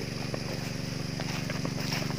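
Small petrol engine of an irrigation water pump running steadily, a constant low drone, powering the sprinklers.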